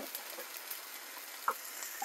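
Chicken breast frying in a small pan on high heat: a steady sizzle, with one light click about one and a half seconds in.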